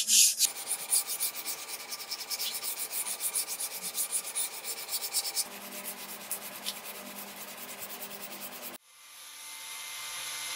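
Fast back-and-forth hand sanding of a steel sword blade with 120-grit sandpaper wrapped on a stick: a quick rasping stroke several times a second, softer after about five seconds. Near the end it cuts off abruptly and a steady, slowly rising machine whir begins.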